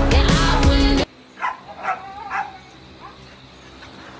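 Background music that cuts off suddenly about a second in, followed by a dog giving three short barks about half a second apart.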